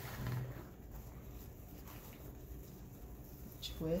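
Quiet room with a steady low hum and faint rustling of satin ribbon as it is twisted and slid around the wooden dowels of a bow maker.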